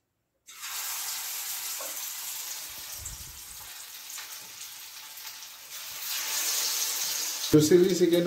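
Marinated chicken pieces deep-frying in hot oil in a kadai: a sizzle that starts suddenly about half a second in as the first piece goes in, and grows louder around six seconds in as more pieces fry. A voice speaks near the end.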